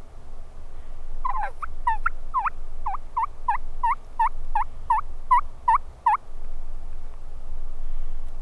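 A run of turkey yelps: about a dozen evenly spaced, pitched notes, roughly three a second, starting about a second in and stopping about six seconds in, over a steady low rumble.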